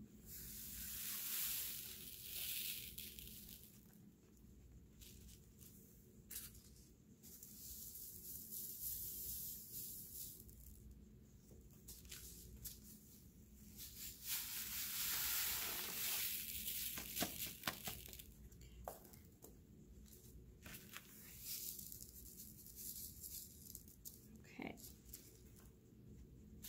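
Loose kosher salt sliding off a tilted sheet of paper onto a second sheet, a soft grainy hiss that comes in several waves, with light paper rustling and a few small ticks.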